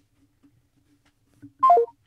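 Near silence, then about 1.6 s in a short phone-call tone of three quick notes stepping downward: the call-ended signal after the other side hangs up.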